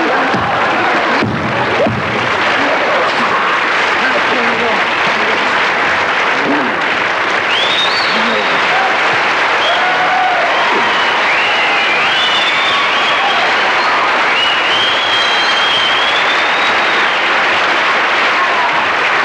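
Studio audience applauding and cheering, steady throughout, with high whistles joining in from about eight seconds in.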